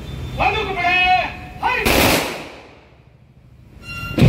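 A drawn-out shouted word of command, then a single rifle volley fired together by a police guard of honour as a ceremonial salute, its crack dying away in an echo over about a second.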